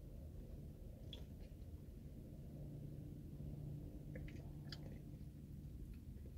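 Faint sipping and swallowing from an aluminium energy-drink can, with a few small mouth clicks. A faint, low, steady hum runs through the second half.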